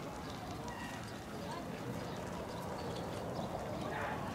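Outdoor ambience: a steady rumble of background noise with faint distant voices and scattered light clicks.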